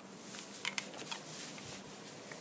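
Faint mouth clicks and soft chewing as a jelly bean is popped into the mouth and eaten, with a few small clicks in the first second.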